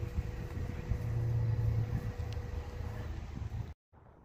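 Steady low outdoor rumble with a low hum. It cuts off suddenly near the end.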